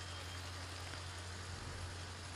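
Low steady hum with a faint even hiss, the background of an open microphone and sound system with no voice on it.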